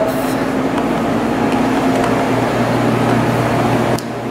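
Steady machine hum and whir with a low droning tone.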